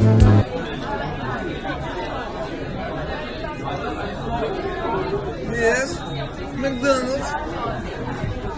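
Overlapping chatter of many diners in a busy restaurant dining room. A song cuts off abruptly about half a second in.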